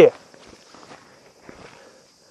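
Faint, irregular footsteps and scuffs on a wet, muddy dirt trail.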